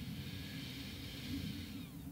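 A long, soft exhale through the nose, a breathy hiss that fades out near the end, over a low steady hum.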